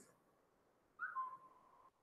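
A single short whistle-like tone about a second in, sliding down slightly, then held briefly and fading; otherwise near silence.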